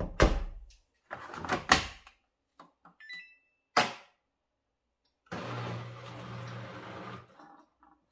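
Kitchen handling sounds: several knocks and clatters, a short electronic beep about three seconds in, then a machine hum for about two seconds before it stops.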